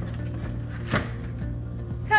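One sharp knock about a second in as the cardboard frame of a pleated air filter is pushed home into its slot in the air handler's metal housing, over steady background music.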